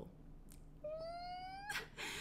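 A domestic cat meowing once: a single drawn-out call that rises slightly in pitch, starting about a second in.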